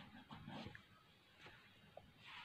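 Near silence: room tone with a few faint, soft scratchy sounds in the first second.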